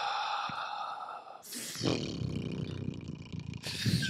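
A man's long, breathy sigh close to the microphone, then a low, drawn-out voiced groan as he ponders the question.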